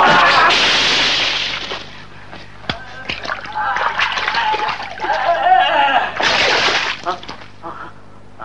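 Water splashing loudly as fighters fall and tumble in shallow paddy water: a big splash at the start and another about six seconds in. Between them come shouts and grunts and a few sharp knocks.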